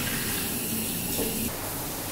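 Tap water running into a restroom sink as dishes are washed, an even hiss that turns softer about a second and a half in.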